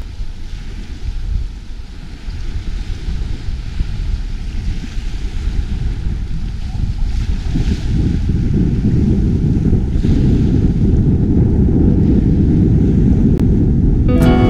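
Low rumbling wind and sea-wave noise, growing louder over the first several seconds and then holding steady.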